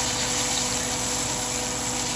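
Smelts frying in hot oil in a cast iron skillet, sizzling steadily, with a faint steady hum underneath.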